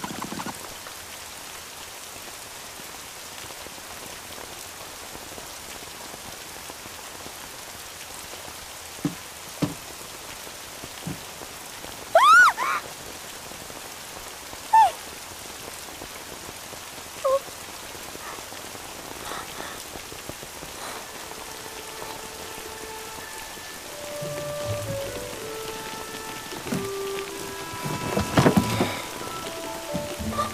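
Steady rain, heard as an even hiss throughout, with a few faint knocks and a few brief high chirps around the middle. Soft music with held notes comes in over the rain in the second half.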